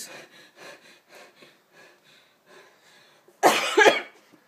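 A person coughs loudly once near the end, after a few seconds of only faint sound.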